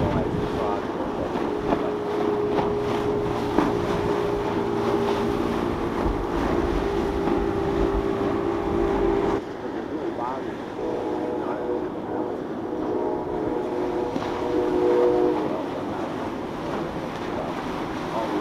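Boat engines running with a steady droning hum over wind rumble on the microphone. The sound changes abruptly about nine seconds in. After that another engine's hum comes in, swells and cuts off a few seconds before the end.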